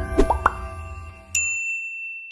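Animated logo-intro sound effects over fading jingle music: three quick rising pops, then a single bright electronic ding that rings for almost a second.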